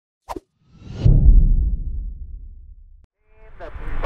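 Intro sound effect: a short click, then a deep whoosh and rumble that swells about a second in and fades away before cutting off abruptly. Near the end, air-traffic-control radio speech fades in.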